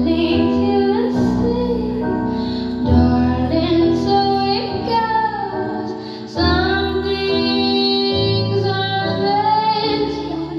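A recorded song: a woman singing a melody over instrumental backing, holding long notes.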